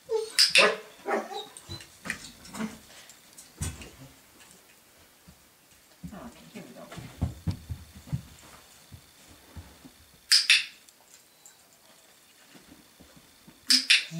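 A young dog barking a few short times in the first second, with another sharp bark-like sound about ten seconds in.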